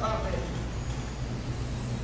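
A steady low hum fills a pause between phrases of amplified speech. The voice trails off at the very start.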